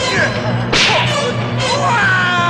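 A single sharp swish-crack of a wooden fighting staff, a film sound effect, about three-quarters of a second in, over the film's music score.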